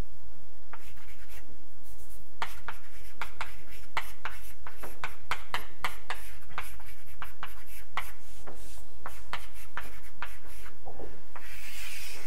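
Chalk writing on a blackboard: a quick, irregular run of short taps and scratches as the chalk strokes out symbols, over a steady low hum.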